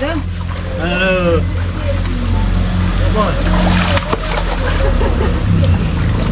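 Feet wading through a shallow, rocky stream, with water splashing and sloshing around the legs over a steady low rumble.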